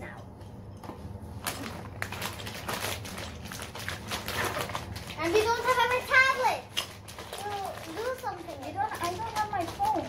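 Two girls talking to each other in the second half, after a few seconds of rustling and handling noise close to the microphone; a low steady hum runs underneath.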